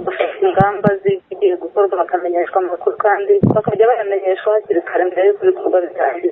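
A woman speaking steadily over a telephone line, her voice thin and narrow, with the lows and highs cut off.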